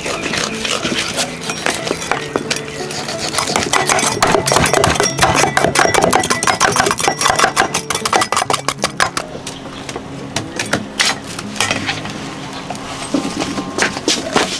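Cleavers chopping snakehead fish on thick wooden stump chopping blocks: a fast run of sharp chops, densest in the middle, over background music.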